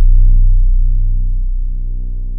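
Synthesized deep bass tone of a logo intro sting, a loud low hum with overtones that slowly fades away.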